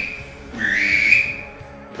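Drake mallard whistle blown to mimic a drake mallard's "dweeb" call: the end of one whistled note, then a second note about half a second in that rises in pitch and lasts about a second. Background music plays underneath.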